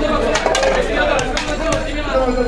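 Busy fish-market chatter, several people talking over one another, with a few sharp knocks of chopping scattered through it.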